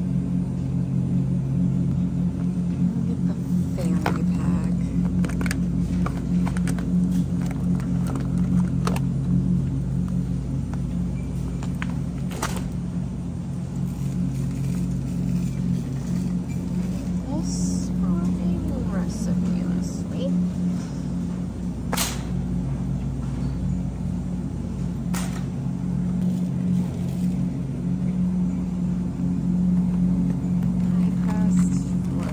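Supermarket aisle ambience by the refrigerated cases: a steady low hum, with a few sharp clicks and rattles from packages and the shopping cart being handled.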